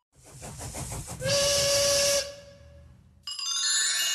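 Steam locomotive sound effect: a run of chuffs, then a steam whistle blast lasting about a second. Near the end a bright chime rings out and keeps ringing.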